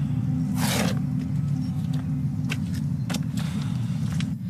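A steady low rumble of background ambience with no speech. A short rushing noise comes through it just under a second in, and a few light taps follow near the middle to later part.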